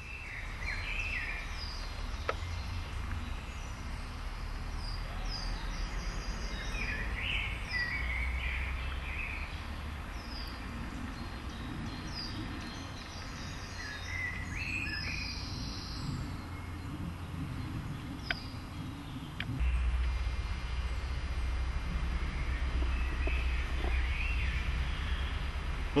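Woodland birds singing in short, scattered phrases over a steady low rumble, with a couple of faint clicks about two-thirds of the way through.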